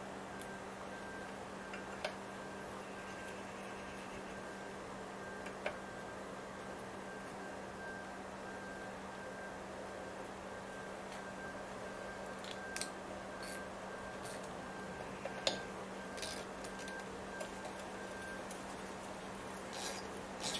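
Steady low hum of garage room tone with a few faint, scattered clicks and taps from tools and parts being handled, more of them in the second half.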